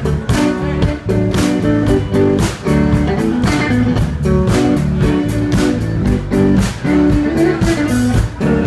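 Live electric blues band playing an instrumental passage: an electric guitar lead over bass and drums keeping a steady beat.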